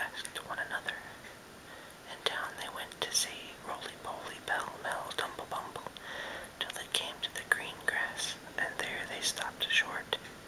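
A man whispering, reading a story aloud.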